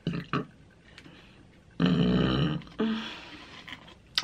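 A woman's loud burp about two seconds in, lasting nearly a second, with a smaller one right after it.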